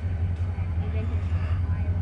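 Diesel locomotive engine running with a steady low rumble as it approaches, with faint voices of onlookers over it.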